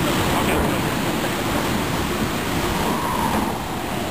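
Water shooting from a fire hydrant that a car has knocked off: a loud, steady rush of water.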